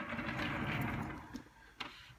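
Tube amplifier's metal chassis scraping and rubbing over the surface as it is turned around by hand, fading out a little over a second in; a single click near the end.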